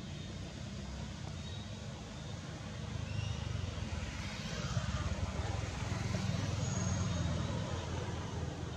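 A low rumble of a motor vehicle passing in the background, growing louder from about three seconds in and easing near the end.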